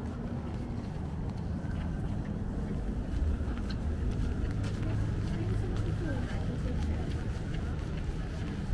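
City-street ambience on a wet road: a steady low rumble of traffic, with passers-by talking faintly.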